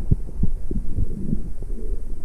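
Underwater camera audio: water moving against the housing gives a muffled low rumble with irregular soft thumps.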